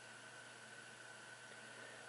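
Near silence: steady background hiss with a faint, steady high-pitched tone.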